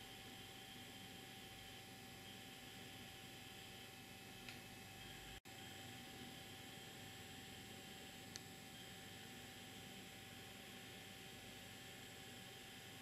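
Near silence: steady faint room hiss, with two faint clicks and a momentary dropout about five seconds in.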